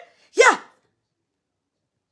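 A woman's single short vocal sound, falling in pitch, about half a second in.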